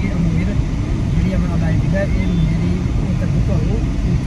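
A man talking in a moving car, over the steady low rumble of engine and road noise inside the car's cabin.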